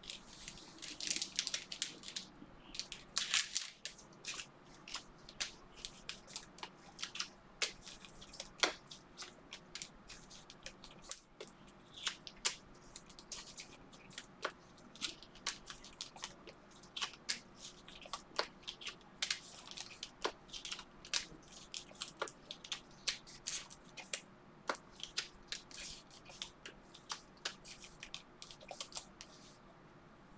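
Trading cards being handled, sorted and slid into clear plastic sleeves: a fast run of crisp clicks, flicks and plastic crinkles, busiest in the first few seconds.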